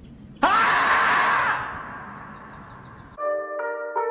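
A sudden, loud, long scream about half a second in, the scream of the 'screaming marmot' meme, loud for about a second and then fading away. Near the end a bright keyboard-like melody of separate notes begins.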